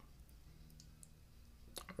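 Near silence: room tone with a few faint clicks, the most distinct pair near the end.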